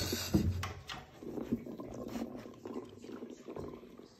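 Saarloos wolfdog puppies moving about in a wooden box: a couple of light knocks in the first half second, then soft irregular rustling and small clicks as a puppy noses at a treat held at the hole.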